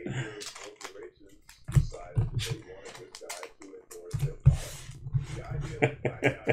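Hands handling trading-card packs and cards on a table: scattered clicks and rustles with several dull thumps.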